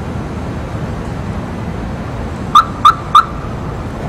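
Steady running noise of a SEPTA electric commuter train moving away, with three short, loud high chirps in quick succession about two and a half seconds in.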